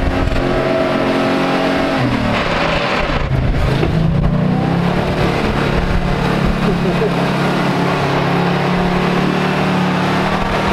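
Willys wagon's engine pulling through a deep mud hole. The revs drop about two seconds in, then it pulls steadily on, with mud and water splashing from the tyres.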